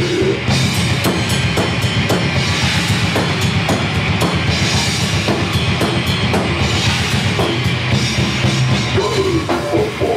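Death metal / deathgrind band playing live: distorted guitars and bass over fast, dense drumming with cymbals, loud and steady throughout.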